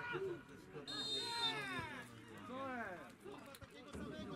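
Distant men's voices shouting and calling across a football pitch just after a goal, with a short high steady tone about a second in.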